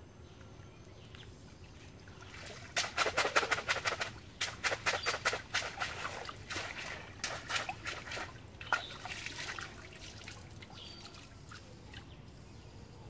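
Water splashing and pouring as a bamboo cage fish trap is hauled up through shallow stream water. A rapid run of splashes starts about three seconds in, is loudest at first, and dies away near the end.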